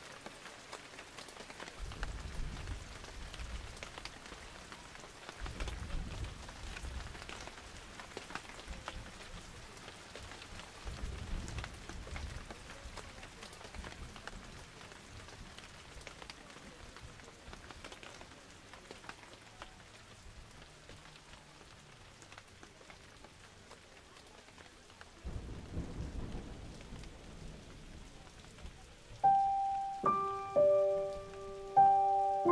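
Faint crackly outdoor background noise with several low rumbles on a phone microphone as it is carried through a crowd. Just before the end, a few sustained musical notes start playing.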